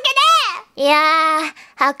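A high-pitched voice singing out an answer: a short sliding syllable, then one held steady note lasting under a second, before ordinary speech returns near the end.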